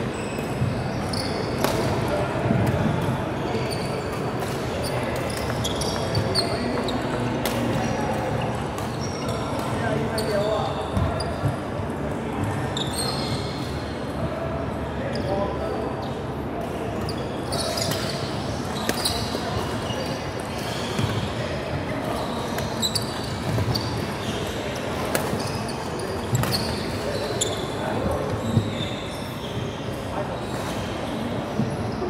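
Badminton play on a wooden court: rackets striking the shuttlecock in sharp cracks, sneakers squeaking on the floor, and footfalls, with voices in the background throughout.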